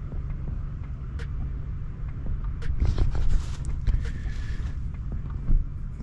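Wind buffeting the microphone: an irregular low rumble that swells about halfway through, with a few light clicks.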